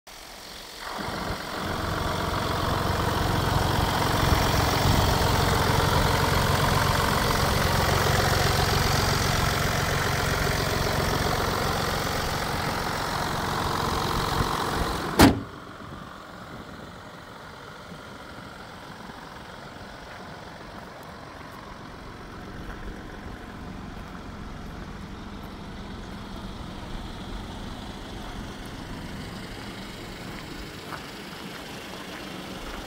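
2018 Mini Cooper D's three-cylinder diesel engine idling with the bonnet up. About halfway through the bonnet is slammed shut with one sharp bang, and the idle carries on much quieter and muffled under the closed bonnet.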